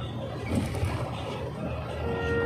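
A moving passenger bus heard from inside its cabin: a steady low engine and road rumble, with a brief knock about half a second in.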